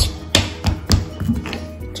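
Background music with a run of sharp, uneven taps, about six in two seconds and loudest at the start: a plastic toy knife knocking on a wooden tabletop.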